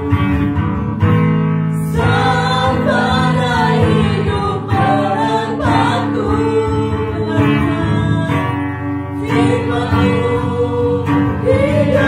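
A live worship song: a woman and a man singing in Indonesian to acoustic guitar.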